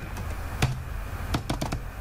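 Computer keyboard keystrokes: a few separate key clicks, one about half a second in, then a quick run of several in the second half.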